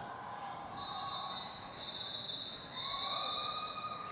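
Roller derby skates rolling on the arena's sport-court floor, with a steady high-pitched squeal starting about a second in and lower tones joining later.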